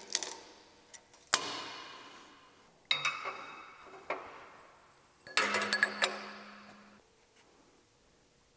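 Stainless steel exhaust parts and steel tools clinking together on a steel fixture table: three sharp metallic knocks, each ringing out for about a second.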